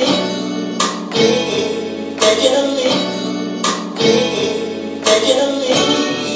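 Chopped slices of a sampled record with singing, triggered live by hand from the pads of an Akai MPC 5000 sampler, each slice starting abruptly and cutting off the one before in an uneven, stop-start groove.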